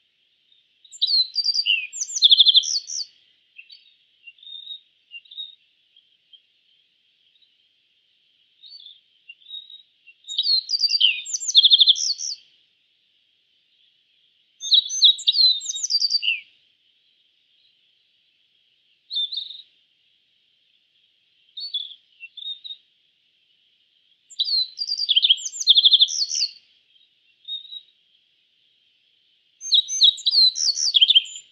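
A bunting singing: short, rapid, high-pitched twittering phrases about two seconds long, five of them with pauses of several seconds, and shorter single notes in between. A faint steady high hiss lies underneath.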